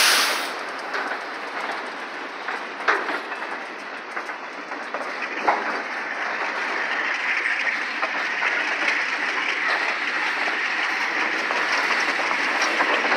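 Freight cars, covered hoppers and then tank cars, rolling past close by: steady noise of steel wheels on rail with clickety-clack from the rail joints. A sharp bang right at the start and two more knocks about three and five and a half seconds in; the rolling noise grows louder and hissier in the second half.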